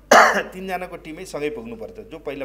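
A man coughs once into his hand, a short, sudden burst just after the start. Quieter voice sounds follow.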